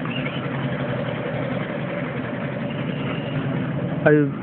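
A steady, unchanging motor hum, like an engine running at idle.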